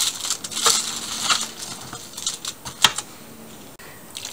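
Metal spoon stirring diced potatoes and onions in a foil-lined baking tray: a run of scrapes and clicks of the spoon against the foil and the tray over the first second and a half, with one sharp click near three seconds.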